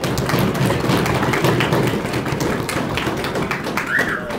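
Audience applause in a room: a dense, continuous patter of many hands clapping, starting suddenly just before and holding loud.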